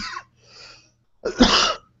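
A man coughs, one short harsh cough about a second in, after a faint breath.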